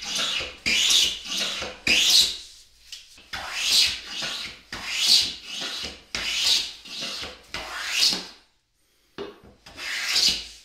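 Hand plane cutting a chamfer along the edge of a wooden vise jaw: a series of about eight swishing strokes, roughly one a second, each peeling off a shaving, with short pauses between some strokes.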